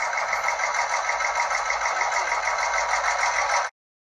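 An edited-in sound effect: a steady, rapidly pulsing buzz of about ten pulses a second that cuts off suddenly near the end.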